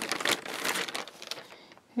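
White plastic poly mailer bag crinkling as a plush toy is pulled out of it. The crackling dies away about a second and a half in.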